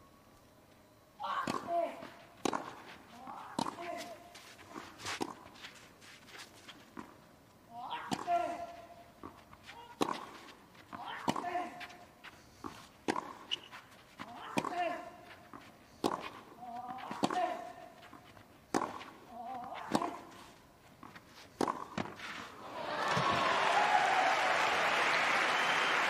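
Tennis rally on clay: a tennis ball struck by rackets about once a second, many shots with a player's grunt. The rally ends and the crowd applauds for the last few seconds.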